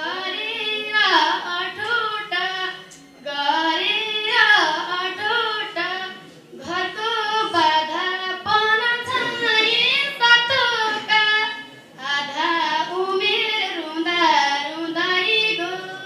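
A woman singing a Nepali folk song solo into a microphone, in long phrases with brief pauses about three, six and a half, and twelve seconds in.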